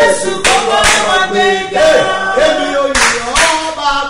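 A praise song sung without instruments, with hand clapping.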